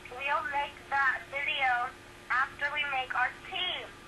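A high-pitched voice talking in short, quick phrases, heard through a video call, with the words unclear. A faint steady hum runs beneath it.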